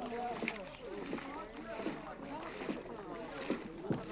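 Several voices talking over one another across the water, unintelligible market chatter from the boats, with a few short knocks and light splashes from wooden paddles.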